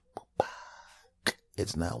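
A man's mouth clicks and a soft breath in a pause between spoken phrases, with a word of speech near the end.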